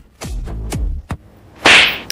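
Edited-in comedy sound effects: three quick sweeps falling in pitch, then a loud crack-like noise burst near the end.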